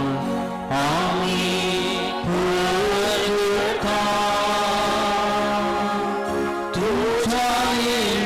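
Slow sung liturgical chant: a voice holding long notes and stepping between pitches with short slides, in phrases broken by a few brief pauses.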